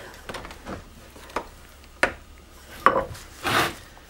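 A few separate sharp knocks and light clatters, like wooden things or tools being handled, with a short rustle near the end.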